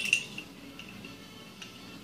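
Quiet handling of a caliper against a plastic rail mount: a brief light metallic ping right at the start, then only faint small clicks, one about a second and a half in.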